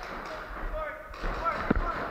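Paintball marker firing a single sharp shot near the end, over distant players' voices calling out across the arena.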